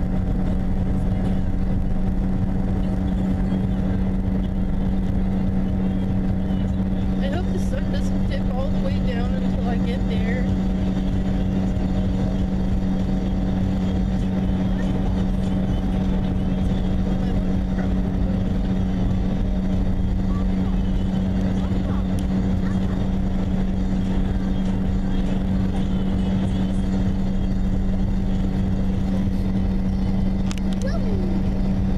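Steady in-cabin drive noise of a car at highway speed: engine and tyre drone with a constant low hum.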